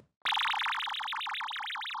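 Synthesized warbling sound effect: an electronic tone wobbling rapidly up and down in pitch, beginning a quarter second in after a brief silence, its wobble slowing gradually. It is a comic effect for wobbly, unsteady legs.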